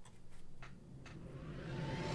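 A few faint clicks, then a swelling hiss that grows louder and higher: the build-up at the opening of a metalcore music video, just before the song comes in.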